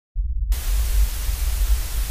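Old analog television static: a low hum comes in almost at once, then loud, steady white-noise hiss of a snowy, untuned screen from about half a second in.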